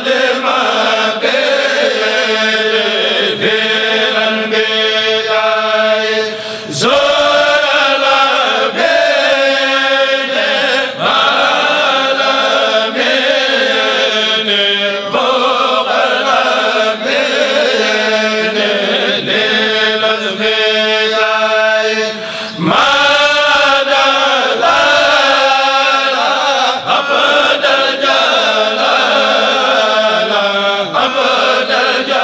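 A Mouride kourel, a group of men chanting a khassida (Arabic devotional poem) together into microphones, in a continuous melodic chant. There are brief pauses between phrases about six and a half and twenty-two seconds in.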